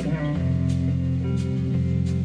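Live blues-rock trio playing: electric guitar and bass holding chords over a drum kit, with a sharp drum or cymbal hit about every 0.7 s. The bass note shifts lower about half a second in.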